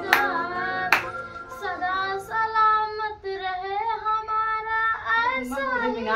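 Music with a high singing voice that bends between notes and holds long ones, with a few sharp percussive clicks, mostly in the first two seconds.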